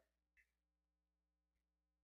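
Near silence: a pause between sentences, with only a very faint steady hum.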